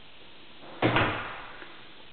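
An interior panelled door bumped once: a single loud thump about a second in that dies away over about half a second.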